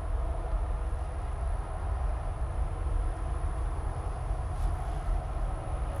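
Steady low rumble and wash of a running reef aquarium: its circulation pumps and moving water, with a faint steady high whine over it.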